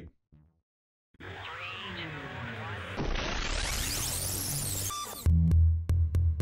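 About a second of silence, then a dense swirl of sound effects with a whoosh that climbs steadily in pitch, under a counted "three, two". A little after five seconds, electronic music with a heavy bass beat and sharp clicks comes in.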